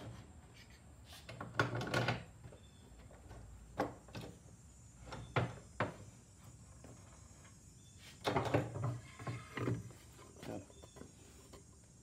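Irregular knocks and scrapes of a wooden cutting board and metal hold-down clamps being handled as the board is unclamped and pulled off a CNC router bed, with a longer run of scraping and knocking about eight seconds in.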